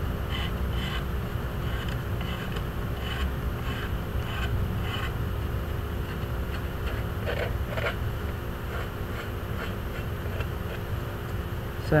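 X-Acto knife blade scraping the seam line off a wet soft-fired porcelain greenware doll head, in short faint strokes. A steady low rumble and hum sit underneath.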